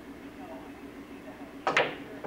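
Pool cue striking the cue ball about 1.7 s in: a sharp click, followed a split second later by a second click of balls colliding, over a steady low hum.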